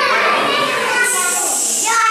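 Young children talking and calling out together, then a long 'shhh' from about a second in as an adult shushes them.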